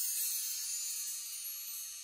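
High, shimmering chimes ringing out together and slowly fading.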